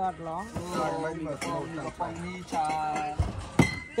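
Several people talking and calling out, some words drawn out, with a sharp knock or clink about three and a half seconds in.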